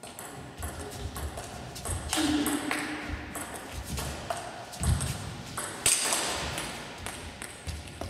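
Table tennis rally: the ball clicking off rackets and bouncing on the table in an irregular series of sharp strikes, which stop just as the point ends.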